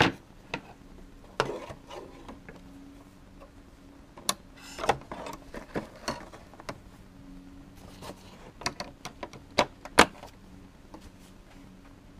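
Irregular plastic clicks and knocks with some scraping as an embroidery hoop holding a pinned towel is handled and fitted into a Brother embroidery machine. There is a sharp click at the start and the loudest knock comes about ten seconds in. The machine is not stitching.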